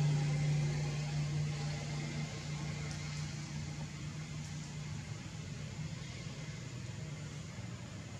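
A steady low mechanical hum over an even background hiss, loudest at the start and easing slightly.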